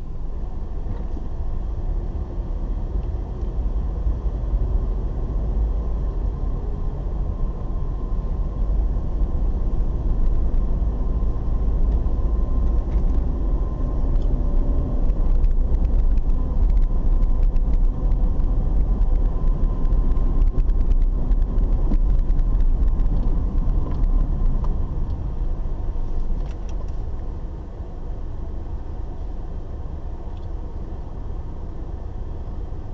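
Low, steady engine and tyre rumble inside a moving car's cabin, growing louder through the middle and easing off near the end.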